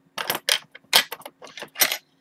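About a dozen light clicks and clinks in quick, irregular succession, the sound of small hard objects being handled close by.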